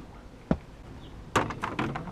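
A single sharp knock about half a second in, then a quick run of clicks and rustles near the end.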